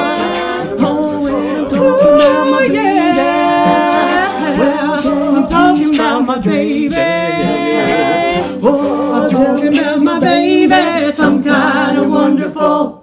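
A mixed male and female a cappella group singing in close harmony with no instruments, moving between held chords and shorter rhythmic phrases.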